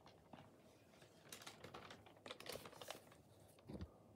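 Faint rustling and light clicking of paper sheets being handled, changing over to the next calligraphy sheet, with a soft low thump near the end.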